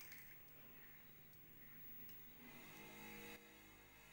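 Near silence: faint room tone with a few faint clicks, and a faint pitched sound lasting under a second about three seconds in.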